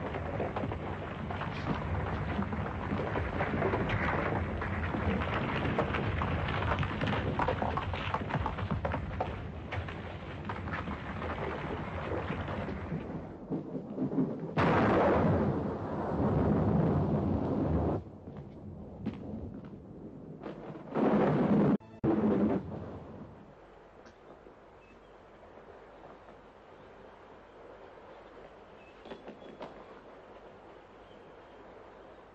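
Steady heavy rumbling noise, then a sudden loud blast about halfway through, followed by a rockslide and two more short loud bursts. After that it falls to a faint low rush like running water.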